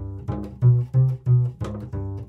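Double bass played pizzicato: a quick run of separate plucked notes giving an example of a minor scale's sound.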